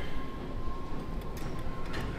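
Steady background noise of a gym room: a low rumble with a thin, steady high tone over it and a few faint clicks.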